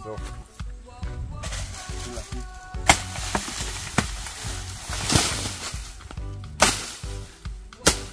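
Dry plantain leaves rustling and crackling as dead trash is pulled from a plantain trunk, with about four sharp snaps. Background music plays throughout.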